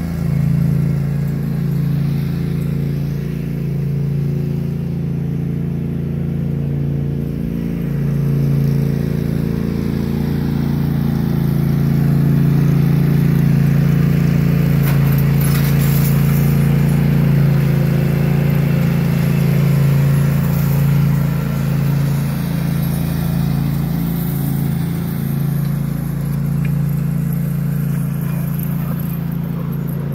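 Riding lawn tractor's small engine running steadily at an even speed, its pitch wavering only slightly.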